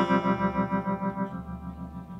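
Hollow-body guitar: a chord struck just before keeps ringing with a rapid, even pulse of about eight beats a second and slowly fades.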